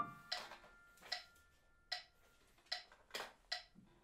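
Metronome clicking at a steady beat, about 75 clicks a minute, as the last piano notes die away. A single sharper knock sounds about three seconds in.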